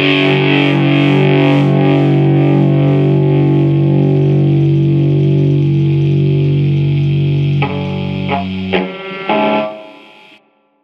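Raw black metal recording: a distorted electric guitar holds a sustained chord, then a few separate chords are struck about eight seconds in and the sound dies away near the end, as a song closes.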